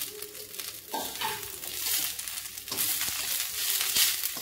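Curry leaves frying in a steel kadai while they are stirred, giving a steady high hiss with fine crackling all through.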